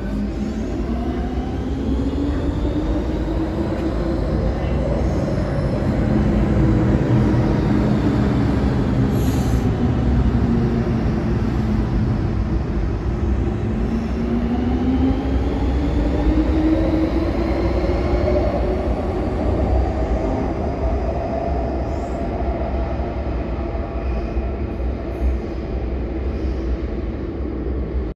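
MTR Kwun Tong line M-train running, heard from on board: a steady rumble of wheels on rail under a motor whine that falls in pitch through the first part and rises again about halfway through.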